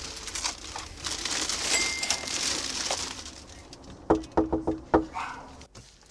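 Plastic grocery bags rustling and crinkling as they are set down on a doorstep, for about three seconds. About four seconds in comes a quick run of short pitched chirps.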